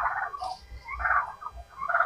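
Domestic fowl calling in the background: a few short, rapid burbling calls, one at the start and another about a second in.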